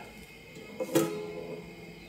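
A guitar string sounds once about a second in, a sharp pluck that rings briefly and fades, as a hand brushes the strings on the neck.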